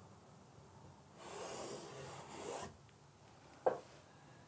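Felt-tip paint marker dragged across a canvas in one stroke of about a second and a half, a faint rasping scratch as the line is drawn. A short, sharper sound follows near the end.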